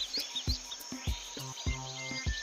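Soft background music of short, low plucked notes, under a chirping insect-and-bird nature ambience, with a few quick high bird chirps near the start.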